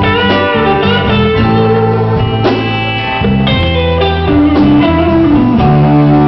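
Live electric blues band playing an instrumental passage, led by an electric guitar playing notes that bend up and down in pitch.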